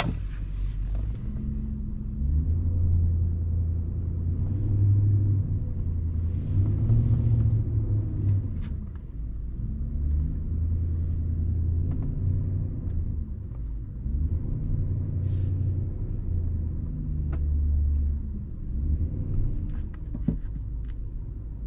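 Nissan Patrol's 5.6-litre petrol V8 heard from inside the cabin while driving, engine speed rising and falling several times in turn, with a few faint knocks.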